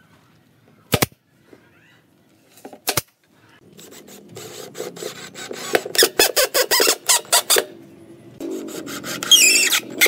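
Cordless drill driving screws through a wooden cleat into a pine planter side, one screw after another: the first run ends in a string of rapid clicks, about seven a second, and the second starts a little after. Two sharp knocks come before the drilling.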